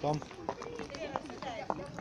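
Footsteps on paving stones, a few sharp steps about every half second, while a man's voice says a word at the start and fainter voices carry on behind.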